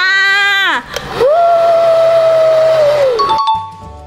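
A woman's voice drawn out in a long held note that falls away, then a second, higher note held steady for about two seconds before sliding down. Quieter outro jingle music starts shortly before the end.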